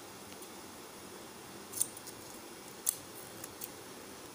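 Scissors snipping a small piece of HighGrip wig tape to trim it: two sharp snips about a second apart, then a couple of lighter clicks.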